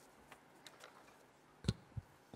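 Handling noise picked up by a microphone: a few faint clicks, then a sharp thump about 1.7 seconds in and a softer knock near the end.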